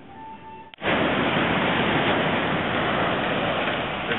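Faint music, cut off a little under a second in by the loud, steady rush of ocean surf breaking on a beach.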